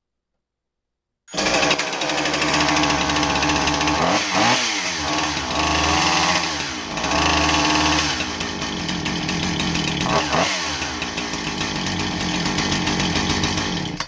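Husqvarna 455 Rancher chainsaw's two-stroke engine idling on the bench, coming in abruptly about a second in and stopping at the end. Its speed sags and picks up again twice while the carburetor idle is adjusted: it runs but still needs carburetor tuning, and the chain no longer turns at idle.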